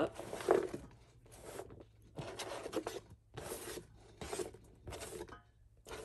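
A hand sliding and scraping chopped onion across a plastic cutting board and pushing it off into the pot, in a series of short, irregular rubbing strokes.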